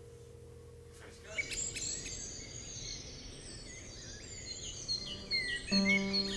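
Songbirds chirping and whistling in a garden, starting about a second in and growing busier. A held note fades out at the start, and a plucked string note comes in near the end.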